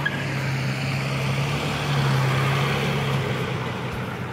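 A car driving past close by on the street: a steady low engine hum with road noise that grows louder toward the middle and fades again.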